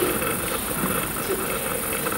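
Room tone with a steady hiss and faint, indistinct voices in the background.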